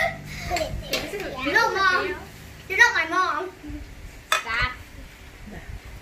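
Children's voices: three short, high-pitched, wordless exclamations. A couple of sharp clicks of a spatula against a steel mixing bowl come near the start.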